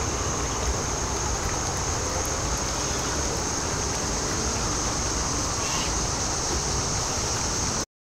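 Steady outdoor ambient noise with a continuous high, even drone over a low rumble, cutting off abruptly near the end.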